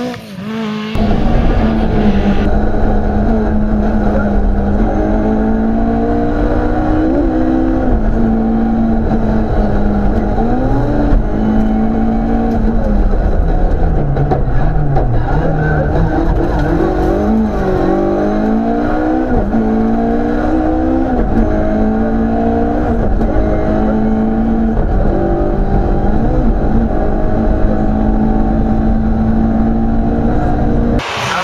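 Rally car engine heard from inside the cockpit, revving hard and repeatedly climbing in pitch and dropping back through gear changes.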